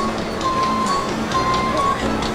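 Music playing, with long held notes over a light, steady beat.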